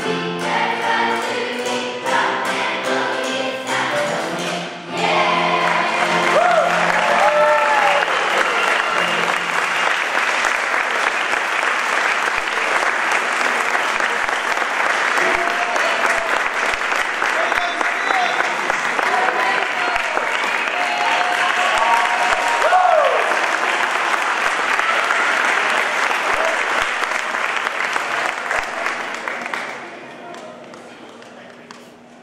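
Children's choir singing the last few seconds of a song. About five seconds in, the singing stops and a long round of audience applause begins, with scattered cheering voices, fading away near the end.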